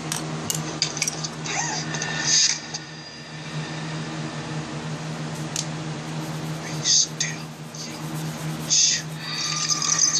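Graphite pencil strokes on drawing paper: a few short scratchy strokes, the longest near the end, over a steady low hum.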